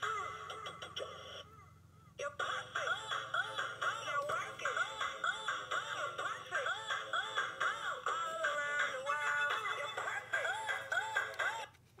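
Chanel perfume music box playing its tune, a melody of short notes that breaks off briefly about a second and a half in, then starts again and runs on.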